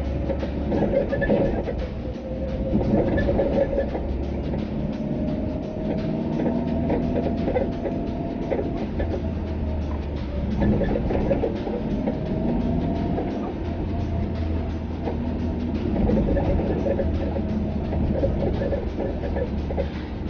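Steady low rumble of a car's engine and tyres heard from inside the cabin while driving, with music playing along underneath.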